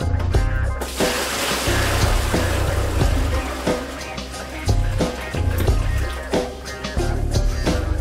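Water mixed with washing soda (sodium carbonate) poured from a five-gallon bucket into a plastic tub to fill an electrolysis bath: a steady splashing rush starting about a second in. Background music with a deep bass line and a beat plays throughout.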